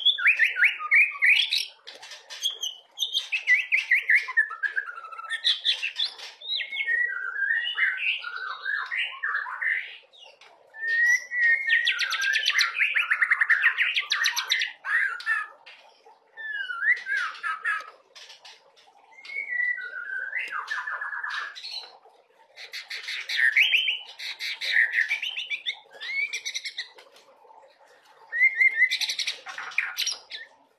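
Young white-rumped shama (murai batu) in transitional juvenile plumage singing a varied song full of mimicked phrases (isian). It sings in bursts of one to four seconds, mixing quick trills with sweeping whistled notes, with short pauses between phrases.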